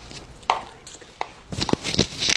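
Sharp, irregular taps and knocks of hard objects: one about half a second in, another a little past the first second, then a quick run of several near the end.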